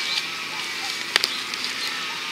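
Soil and small roots being worked loose in a dig hole with a hand digger and gloved fingers: a soft crumbling scrape with one sharp click a little past the middle.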